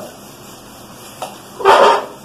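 A man's single short, loud vocal burst near the end, after a faint click.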